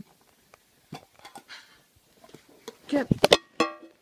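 Handling noise from a phone held by a hand pulling at sticky putty: faint rustles and ticks, then a few sharp clicks about three seconds in and a brief buzzy rasp just before the end.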